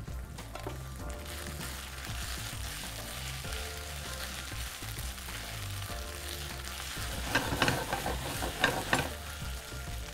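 Onion, green chillies and whole spices sizzling in hot ghee in a kadhai as they are stirred with a silicone spatula. Near the end comes a run of louder scrapes and knocks of the spatula against the pan.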